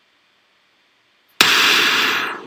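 Near silence, then about a second and a half in a sudden loud burst of noise: an impact-style sound effect opening a promotional video's soundtrack.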